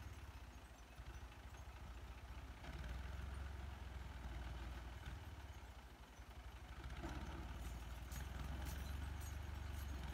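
Farm tractor's diesel engine running steadily at low revs with a deep, even hum. It eases off around a second in and again near six seconds, then picks up about seven seconds in.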